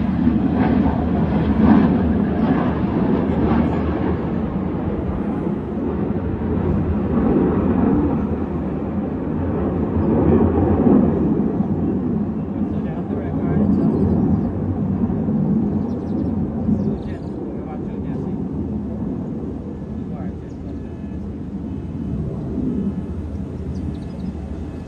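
Jet engines of a pair of fighter jets flying past at a distance: a steady low rumble that slowly fades over the second half.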